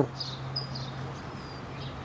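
Faint, short bird chirps in the first half over a steady low hum that fades near the end.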